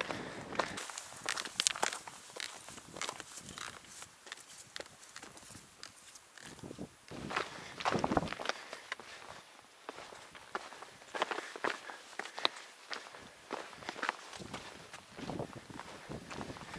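Hiking boots stepping and scuffing on a rocky, gravelly mountain trail at an uneven walking pace.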